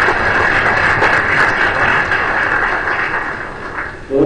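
An audience applauding, a dense steady patter of many hands clapping that builds just before and tapers off near the end.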